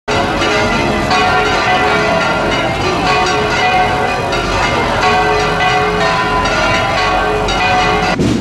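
Bells ringing in a continuous peal, many strikes overlapping with their tones hanging on. The sound starts suddenly at the beginning.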